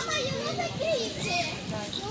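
Young children's voices talking and calling out, high-pitched with rising and falling tones.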